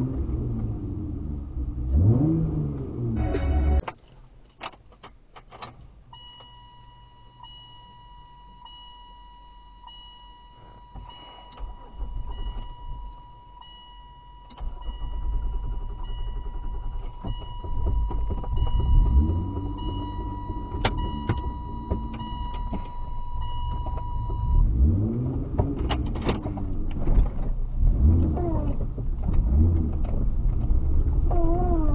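2004 Saturn Vue's 3.5 L V6 being started after refuelling. It revs and then cuts out suddenly about four seconds in, a few clicks follow, and a steady repeating dashboard chime sounds through the middle while the engine comes back up and revs again. This is a hard start after a fill-up, which the owner blames on a failed EVAP purge solenoid sticking open and flooding the engine with fuel vapour.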